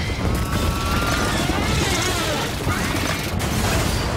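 Action-film battle sound mix: a continuous heavy rumble of explosions and impacts, with shouting voices and music underneath.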